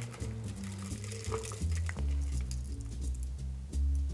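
Background music with a slow, stepping low bass line. Under it, a faint pour of a shaken cocktail through a fine-mesh strainer into a martini glass, with a few light clinks.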